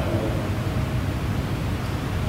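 Steady background noise, a low rumble with hiss above it, in a pause with no speech.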